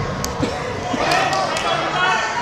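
Indoor soccer play in a large hall: a sharp knock about a quarter of a second in and a couple of soft thuds just after, from the ball and players at the boards, then voices calling out about a second in.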